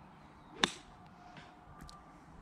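A golf club striking a ball off the tee: one sharp crack a little over half a second in.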